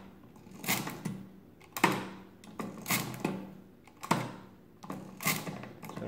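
The hand crank of a 1920s Rapid pinwheel calculator is turned over and over, about once a second. Each turn gives a sharp clack of metal mechanism, and the gearing runs figures into the accumulator register.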